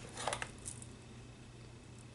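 Faint handling noises from items being lifted out of a cardboard box lined with foam: a few soft ticks and rustles near the start, then quiet room tone with a low steady hum.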